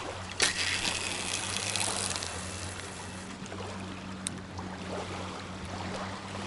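A fishing cast with a spinning reel: a click about half a second in, then about two seconds of line hissing off the spool as the feeder rig flies out. Small waves lap on a sandy shore throughout.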